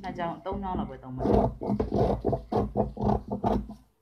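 A person talking in a continuous stream, with no other clear sound; the voice stops just before the end.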